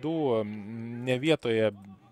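A man's voice holding one long, level hesitation sound for about a second, then a few quick words.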